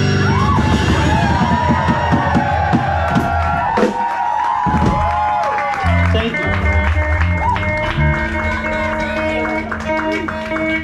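Audience cheering and whooping at the end of a rock song as the band's last chord rings out. From about six seconds in, a few low bass and guitar notes are played.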